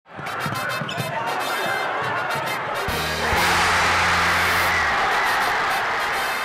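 A crowd of students shouting and clapping, with many short sharp claps. About three seconds in, music starts with a low held note, and the noise of the crowd swells louder.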